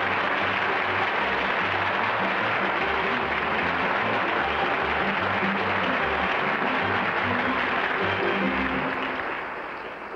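Studio audience applauding, with music playing under the clapping; both fade out near the end.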